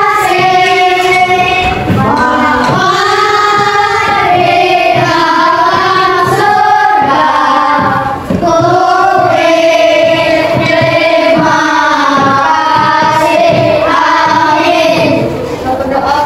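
A group of schoolchildren singing a song together with a woman's voice among them, in long held notes. The singing ends shortly before the end.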